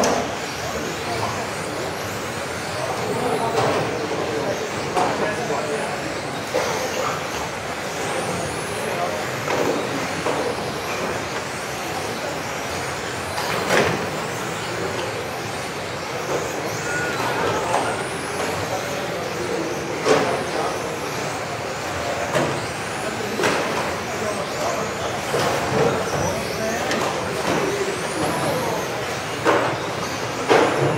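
Several electric RC touring cars racing in a reverberant hall, their motors whining up and down in pitch as they accelerate and brake, with a few sharper knocks along the way. Voices murmur underneath.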